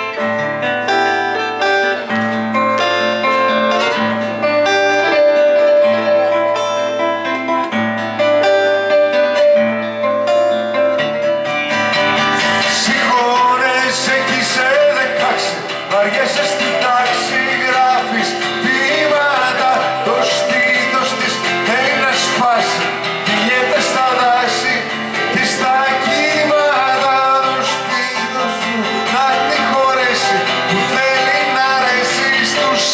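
Live acoustic guitar and stage keyboard playing a song, with steady chords and bass notes. About twelve seconds in the music grows fuller and a man's singing voice comes in over it.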